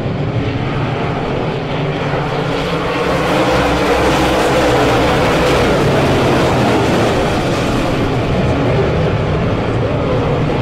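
A full field of dirt-track modified race cars with V8 engines at full throttle, taking the start and racing past together. The engine noise swells about three seconds in and stays loud.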